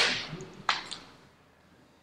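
Sheets of paper being handled, with two sharp paper snaps: one right at the start and one about two-thirds of a second in, then fading rustle and quiet.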